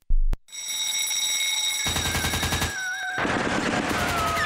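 Produced sound effects: a single loud thump, then a ringing alarm bell with fast regular strokes, joined near the two-second mark by a rapid burst of machine-gun fire. About three seconds in it gives way to a noisier wash with a wavering tone.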